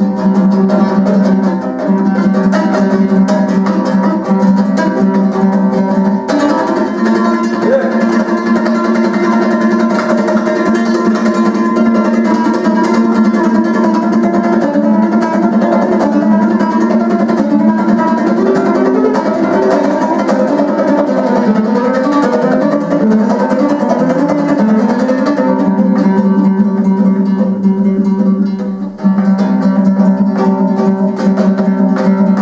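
Kazakh dombra played solo, strummed quickly over a steady low drone. The melody grows busier about six seconds in and settles back to a plainer repeating figure near the end, with a brief drop just before it ends.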